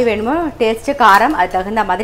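A woman speaking, talking almost without pause.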